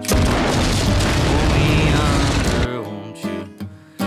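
A revolver shot followed at once by a large explosion: a dense, deep roar lasting about two and a half seconds that cuts off abruptly. Quiet music fades under it near the end.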